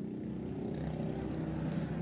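Low, steady background rumble and hum with no distinct events.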